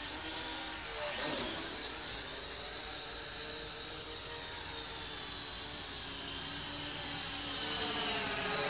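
Syma X8W quadcopter's propellers and motors whining in flight, the pitch shifting as it manoeuvres. It gets louder near the end as the drone comes closer.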